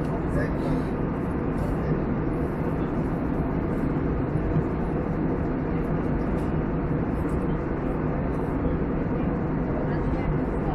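Steady cabin noise of a jet airliner in flight: an even roar of engines and airflow, with faint low hums running through it.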